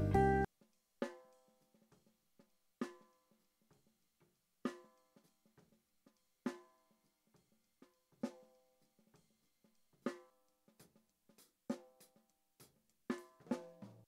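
The full jazz band cuts off just after the start, leaving a soloed close-miked snare drum track: a ringing snare backbeat about every 1.8 seconds with faint ghost strokes between, and a quicker run of hits near the end.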